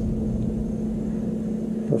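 A steady low machine hum with one held tone, running evenly through a pause in speech.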